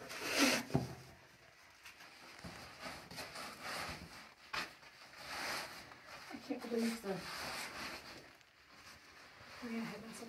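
Clothing and boots scraping and rustling against rock as a caver wriggles through a tight, muddy passage, in a series of irregular shuffles. A few brief voice sounds come about two-thirds of the way in and again near the end.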